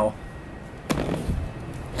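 A single sharp knock about a second in, a cardboard product box bumped against the tabletop as it is picked up.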